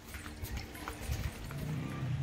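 Footsteps of several people walking on a concrete lane, a series of light, irregular taps, with faint music in the background.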